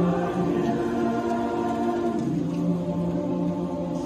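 Mixed choir of men's and women's voices singing in parts, holding long sustained notes, with the harmony shifting to a lower chord about two seconds in.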